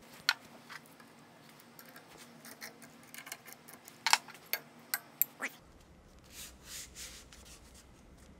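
Scattered light clicks and taps, a few of them close together a few seconds in, as a metal straight edge is set against the face of a soft-backed belt-grinder platen and the platen wheel to line them up.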